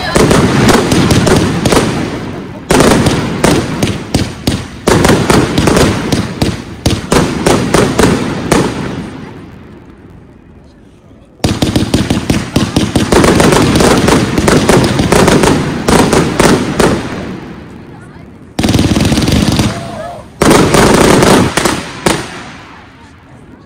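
A 60-shot, 30 mm consumer firework compound cake (Röder/Gaoo Hammer SL60-03) firing rapid strings of shots with loud salute bangs. The shots come in several volleys, each lasting a few seconds. Between the volleys there are short lulls in which the echoes die away: one near the start, a longer one about ten seconds in, and a brief one near the end.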